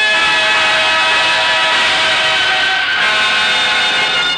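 Orchestral music playing held, sustained chords, with a change of chord about three seconds in: the closing curtain music of a radio drama.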